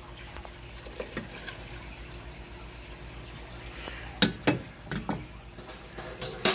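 Granulated sugar sliding out of a glass baking dish into a pan of water, a soft steady hiss, with a few sharp knocks of the dish against the pan, the loudest about four seconds in.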